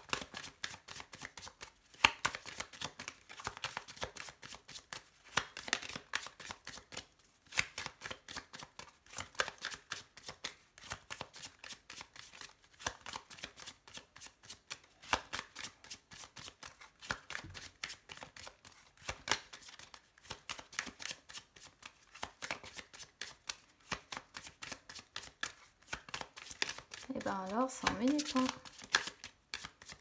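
A deck of fortune-telling cards shuffled by hand, in runs of rapid card-on-card flicks broken by short pauses.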